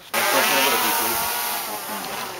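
A camera drone's propellers buzzing in flight, a whine of many wavering pitches that grows slowly fainter as it flies away.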